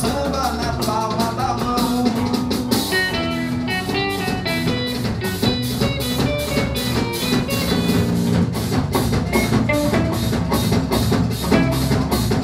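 Live band music: guitars over drums keeping a steady, quick beat.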